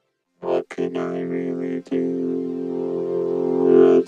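Behringer VC340 analog synthesizer playing sustained chords. It comes in about half a second in after a short silence, is briefly re-struck twice in the first two seconds, then holds and swells slightly near the end.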